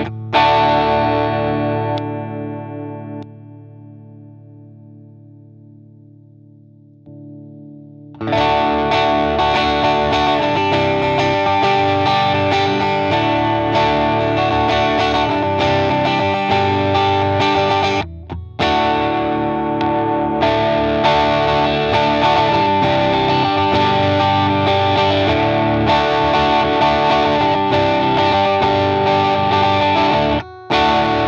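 Electric guitar through a Klon-style overdrive pedal, with a driven, distorted tone. A chord rings out and slowly dies away through the Caline CP-43 Pegasus. Then, about eight seconds in, steady chord-and-riff playing starts again through the Chellee Ponyboy V3, pausing briefly once more.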